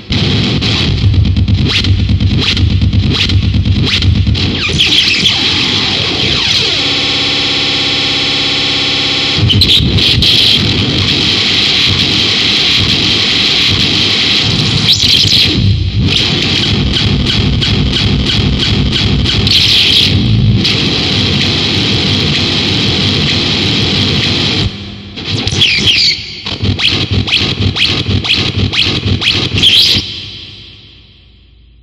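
Harsh noise music: dense, heavily distorted noise, loud throughout. About seven seconds in it gives way for a few seconds to a steady droning chord with a slowly falling sweep under it. Near the end it breaks into choppy, stuttering bursts.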